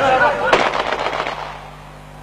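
A rapid, rattling burst of sharp bangs starts about half a second in and dies away within about a second. People's voices come just before it.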